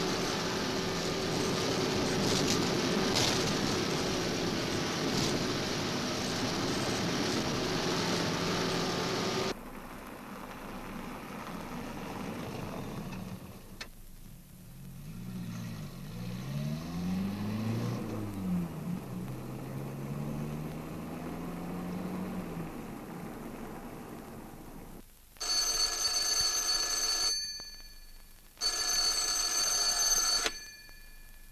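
A car engine running under way, cut off suddenly about nine seconds in, followed by a quieter engine whose pitch rises and falls. Near the end a telephone bell rings twice, each ring about two seconds long.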